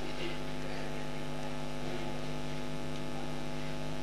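Steady electrical mains hum in the microphone and sound system: a low, unbroken buzz with many evenly spaced overtones.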